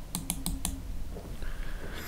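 Computer mouse button clicking: four quick, sharp clicks within the first second, double-clicks to enlarge the editor's preview.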